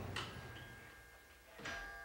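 A soft struck chime-like note about one and a half seconds in, several clear tones ringing on after the strike, with a faint click just before.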